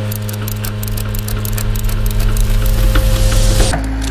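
Ratchet strap being cranked tight, an irregular run of metal clicks from the ratchet over a steady engine hum, getting louder toward the end.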